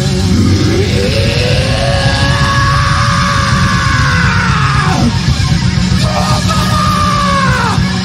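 Live rock band playing, with electric bass, guitar and drums under a long held yelled vocal that swoops up, holds and drops away about five seconds in, then a second, shorter held yell near the end.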